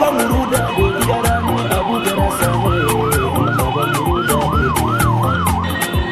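A siren yelping, its tone rising and falling quickly, about two to three sweeps a second, over background music with a steady beat. The siren stops just before the end.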